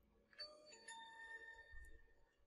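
A faint chime: several bell-like tones come in one after another and ring on together for about a second and a half.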